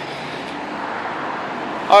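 Steady noise of road traffic, swelling slightly.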